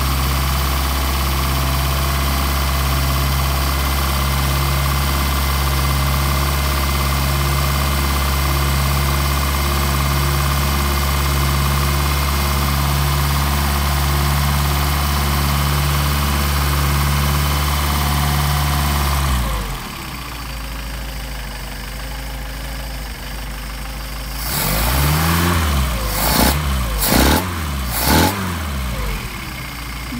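Mercedes-Benz 190SL four-cylinder engine idling steadily on its twin Solex carburetors while it warms up, shaking enough to shake the camera. About two-thirds of the way through, the sound suddenly becomes much quieter, and several irregular knocks and rumbles follow near the end.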